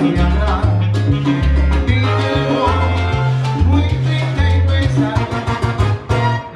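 A live salsa band playing through PA speakers, with a bass line stepping between notes under timbales and drum strikes.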